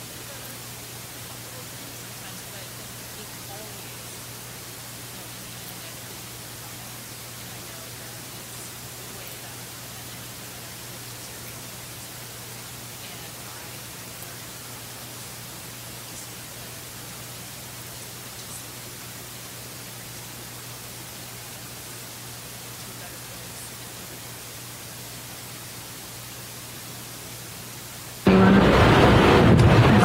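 Steady electrical hiss with a faint low hum, the bare noise floor of the recording with no speech in it. About two seconds before the end a much louder rushing noise cuts in suddenly.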